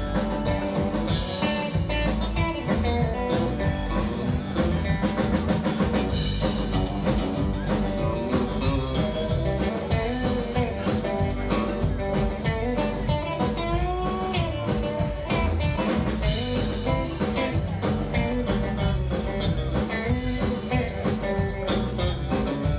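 Live country-rock band playing an instrumental break: an electric guitar lead with bent notes over strummed acoustic guitar, bass and a steady drum-kit beat.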